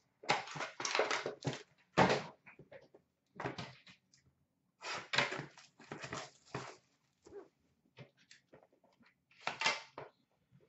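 Hands opening a box of hockey trading cards: cardboard and paper packaging scraping and rustling in short irregular bursts, with a knock about two seconds in.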